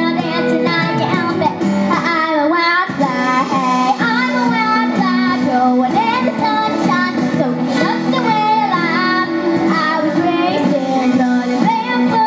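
A young girl singing a country-pop song into a handheld microphone over instrumental backing, her voice gliding between held notes.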